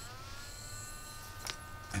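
Faint high-pitched electronic whine, a few steady tones that dip slightly right at the start and then hold, from an XL4016 DC-DC step-down converter working with its output shorted, held in current limit. A single click about one and a half seconds in.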